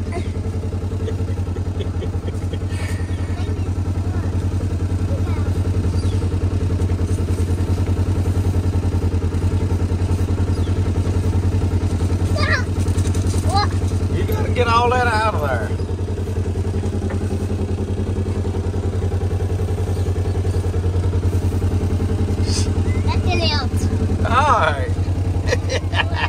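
Polaris side-by-side utility vehicle's engine idling steadily, an even low hum. A child's voice is heard briefly about halfway through and again near the end.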